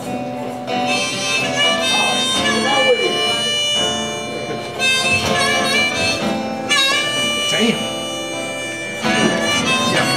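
Acoustic guitar played live with a harmonica over it. The harmonica comes in about a second in and plays held, high phrases separated by short breaks.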